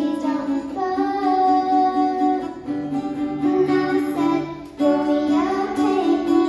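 A young girl singing while playing an acoustic guitar, her voice holding and sliding between notes over the strummed chords, with a brief dip just before five seconds in.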